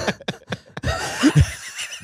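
People laughing into close microphones: short, choppy bursts of laughter with a brief rising squeal about halfway through.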